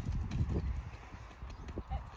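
Hoofbeats of a ridden horse trotting on an outdoor arena surface. The footfalls are dull and regular, and they grow fainter as the horse moves away.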